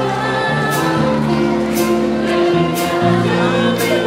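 Jazz band playing: the horn section holds sustained chords over bass notes that shift a few times, with a cymbal struck about once a second.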